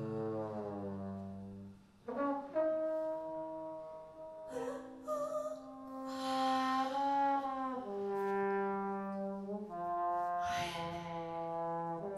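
Big band brass section, trombones and trumpets, playing long held chords that move to a new chord every couple of seconds, with a brief break about two seconds in.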